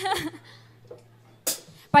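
A woman's voice over a microphone in the first moment, then a faint low steady hum. A single sharp hit comes about one and a half seconds in, and she starts talking again at the very end.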